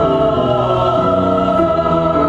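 A male and a female voice singing a duet together in long, held notes.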